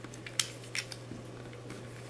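Plastic layers of a corner-turning octahedron twisty puzzle being turned by hand: a handful of short clicks, the loudest about half a second in.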